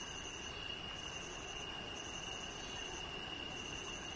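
Insects singing at night: one steady high trill, with a second, higher trill coming and going in bouts of about a second, over a faint hiss.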